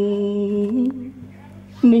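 A person's voice holding a long, steady sung note that wavers briefly and fades out about a second in. A new loud sung note starts abruptly near the end.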